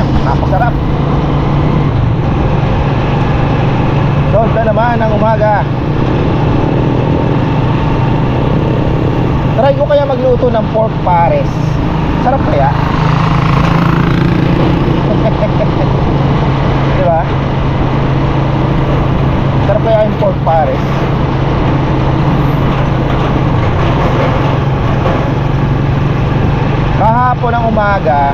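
Small motorcycle's engine running at a steady cruise while riding along a road, with wind and road noise.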